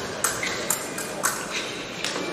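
Épée blades clinking against each other a few times in quick, irregular succession, each sharp hit leaving a brief metallic ring, over the steady noise of a large hall.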